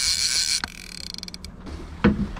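Fishing reel working under the pull of a hooked Chinook salmon: a steady high buzz for the first half second or so, then a quick run of even clicks about a second in.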